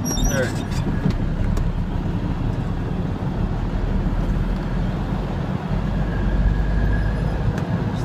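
Straight truck's engine running steadily in third gear, heard inside the cab as a deep, even drone.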